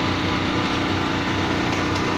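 A small engine running steadily with an even hum.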